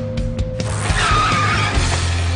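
Cartoon sound effect of a bicycle skidding to a stop in dirt, a short squeal about a second in, over background music.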